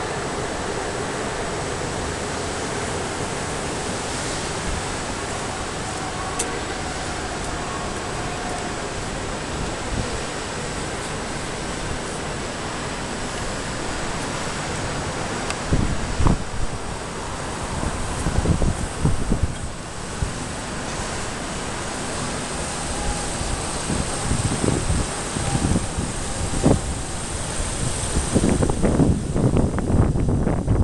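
Wind blowing across the camera's microphone: a steady rushing hiss, with irregular low buffeting gusts in the second half.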